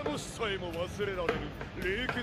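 Anime dialogue: a man's voice speaking Japanese in continuous phrases.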